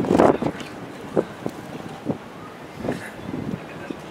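Wind buffeting an outdoor microphone, with a brief burst of voices at the start and a few short scattered vocal sounds after.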